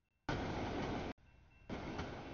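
Road traffic noise from an outdoor camera microphone, heard in short pieces that cut in and out abruptly with dead silence between them.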